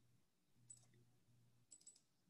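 Near silence with a few faint computer mouse clicks: one about a second in and a quick pair near the end.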